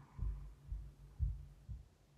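Faint low thumps, about four in two seconds, over quiet room tone.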